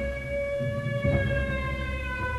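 Film soundtrack: a held, siren-like tone with its overtones slowly falling in pitch over a low rumble.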